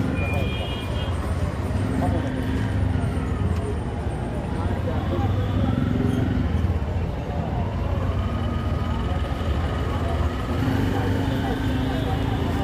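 Busy roadside traffic: a steady engine rumble with a few held horn notes, and people talking in the background. A knife chops on a steel plate.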